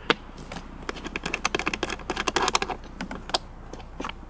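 A screwdriver backing the screw out of a generator's plastic air filter cover: a quick run of small clicks and ticks, thinning out after about three seconds.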